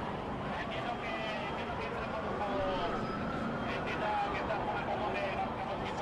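A crowd of people talking and calling out over one another, over a steady background of street and traffic noise.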